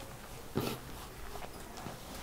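Whiteboard eraser wiping the board: faint rubbing, with one short louder swipe about half a second in.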